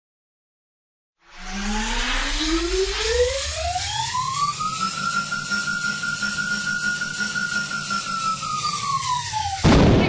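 Logo-reveal intro sound effect. A synthetic tone with a low rumble beneath it starts about a second in and rises steadily in pitch over several seconds. It holds high, sags a little, then ends in a loud hit near the end.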